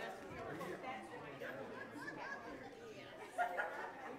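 Indistinct chatter of many people talking at once in a large hall, a congregation gathering, with one voice briefly louder near the end.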